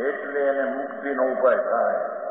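A man speaking in a continuous lecture, the sound thin and narrow as from an old or low-quality recording.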